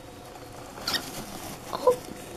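Pet rat gnawing at a whole almond in its shell, with small crunches and rustling in paper bedding, and a sharper crack about a second in. A short, louder sound comes just before the end.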